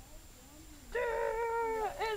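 A dog giving one long, steady whine lasting about a second, starting about a second in.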